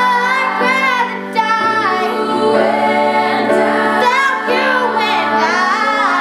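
Several young women's voices singing loudly together in harmony, over sustained piano chords.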